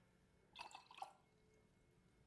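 Faint water drips from a small glass beaker being emptied, with a light tick about a second in; otherwise near silence.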